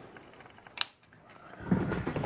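A single sharp click a little under a second in, as mains power is connected to a metal-cased switching power supply for LED pixel strings and it powers up. Rustling handling noise follows near the end.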